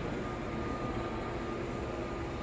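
Steady background hum of machinery with a faint, even high whine, unchanging throughout.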